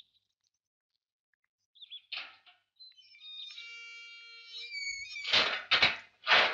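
Electronic doorbell playing a short multi-note chime, then two loud rough bursts of noise in the last second.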